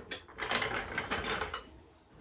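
A ratchet clicking rapidly for about a second, then stopping.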